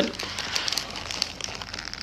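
Close-up eating sounds: the crinkling of a paper sandwich wrapper and biting and chewing, a fine continuous crackle of small ticks.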